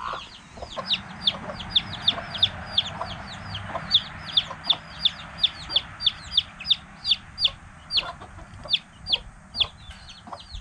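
Chicks peeping steadily, a fast run of short, high peeps that each fall in pitch, about four a second, with hens clucking low underneath.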